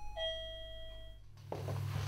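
Two-note ding-dong doorbell chime. The lower second note sounds at the start and rings out for about a second.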